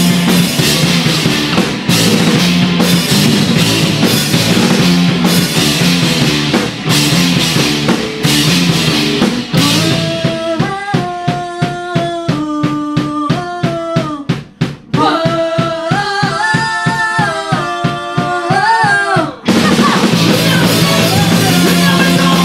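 Punk rock band playing live: distorted electric guitars, bass, drum kit and a singer at full volume. About ten seconds in, the band drops to a sparse passage of a steady drum beat under a single melody. Near the end the full band comes back in.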